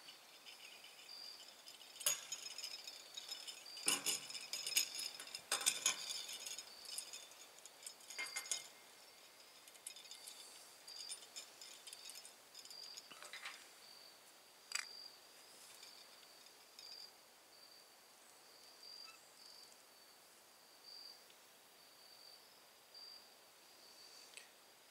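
Scattered faint metallic clinks and taps as small steel parts and tools are handled on a propane tank's steel top, several close together in the first nine seconds and only a few after. Insects chirp steadily in the background.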